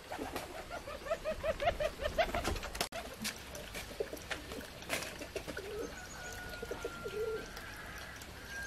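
A bird calling a quick run of about a dozen short, even notes over the first few seconds, then softer scattered calls and a thin steady whistle near the end, among scattered light knocks.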